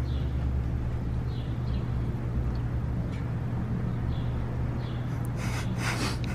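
Outdoor parking-lot ambience: a steady low mechanical hum, like an idling vehicle, with faint short high chirps every second or so and a brief rustle near the end.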